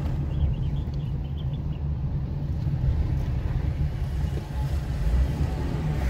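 Steady low rumble of a car in motion, engine and road noise heard from inside the cabin.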